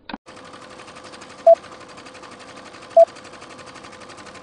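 Film-leader countdown sound effect: the rapid clatter of film running through a projector over a steady hum, with a short beep about every second and a half, twice. A couple of quick clicks come right at the start.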